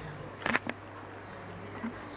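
Homemade pulse motor and reed-switch light-bulb flasher running: a steady low hum with a few sharp clicks, the loudest a pair close together about half a second in.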